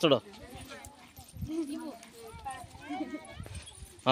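Faint background chatter of a crowd of children and women, with scattered low knocks and thuds underneath.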